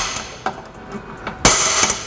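Center punch striking the metal pedestrian (crash) bar of a Mk5 Toyota Supra to mark a drill point. The ring of one sharp metallic strike fades as it opens, and a second sharp strike comes about a second and a half in, ringing briefly.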